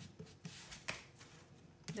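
Tarot cards being gathered up from a stone countertop and stacked: quiet slides of card over card and surface, with a few short clicks as cards tap together, one just before the end.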